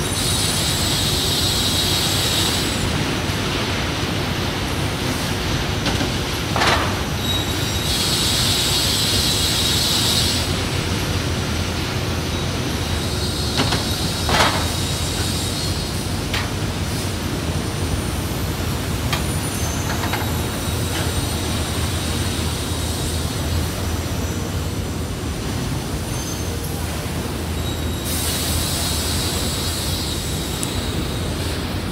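Gypsum board production line machinery and roller conveyors running with a steady hum. A high hiss lasting two to three seconds comes three times: at the start, about eight seconds in, and near the end. A few sharp knocks come in between.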